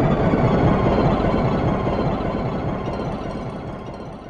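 Dense, rumbling electronic noise texture in an electronic music track, loudest about a second in and then fading steadily.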